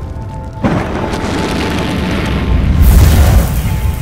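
A deep boom sound effect with a rushing roar. It starts suddenly just under a second in, builds to its loudest near three seconds and eases off toward the end, over background music.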